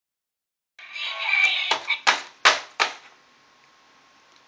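A singing Mickey Mouse greeting card's sound chip plays a short burst of tinny electronic music as the card is waved about. The music is followed by four sharp paper flaps about a third of a second apart.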